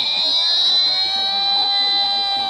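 A high voice holding long, steady notes that drift slightly down in pitch, with a lower note joining about a second in, played back through a screen's speaker.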